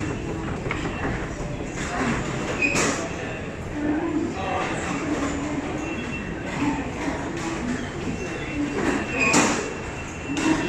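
London Underground station ticket hall: a steady low rumble with footsteps and a crowd murmuring. Two sharp clacks stand out, about three seconds in and near the end.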